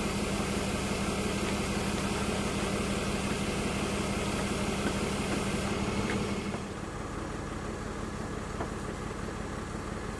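A tow truck's engine running steadily while its crane hoists a wrecked car, with a strong steady hum; the hum and the higher noise drop away about six and a half seconds in, leaving a quieter engine sound.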